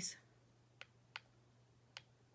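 Three faint, sharp clicks over a faint, steady low hum: one a little under a second in, one shortly after, and one near the end.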